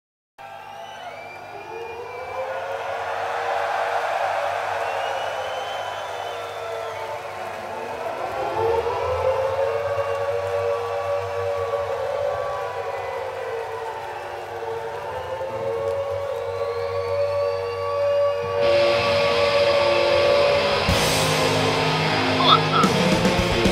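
Civil-defence-style siren wailing, its pitch rising and falling in about three long, slow waves. Louder music comes in over it about two-thirds of the way through.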